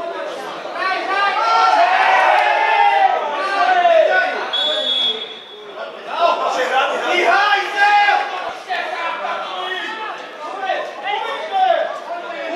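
Several men shouting and talking over one another, the calls of players and spectators at a football match. About halfway through, a referee's whistle sounds once as a steady blast of about a second.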